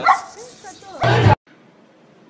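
A dog barking amid loud voices, with a loud burst just after a second in; the sound then cuts off abruptly to quiet background noise.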